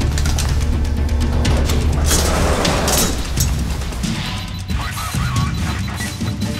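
Dramatic film-trailer soundtrack: a deep bass drone, then a cluster of loud percussive hits and swishes about two to three seconds in, after which it eases off.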